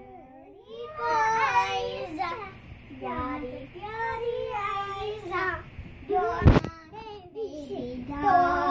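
A young child singing a simple song in a high voice, starting about a second in, with one sharp thump about six and a half seconds in.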